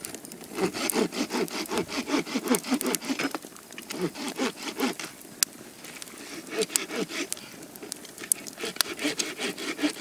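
Wood campfire crackling, with a few sharper single pops standing out.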